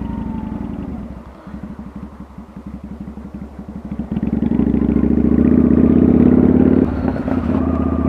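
Kawasaki Vulcan VN900 V-twin engine with the throttle eased off through a tight hairpin, running quieter with its slow firing pulses audible. About four seconds in it is opened up and pulls loud up a steep hill, with a brief dip near the end.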